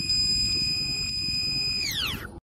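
Electronic outro sound effect: a steady high whistling tone over a low rumbling noise, the tone starting to slide down in pitch near the end.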